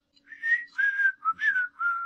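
A person whistling a short tune of about five clear notes, each held briefly with short breaks between them.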